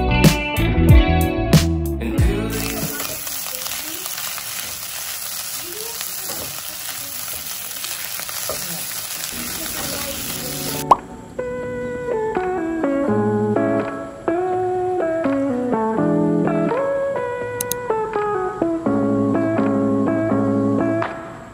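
Rice and egg frying in a nonstick pan, a steady sizzle lasting about eight seconds as it is stirred with a wooden spatula. Background music plays before it and takes over again about eleven seconds in.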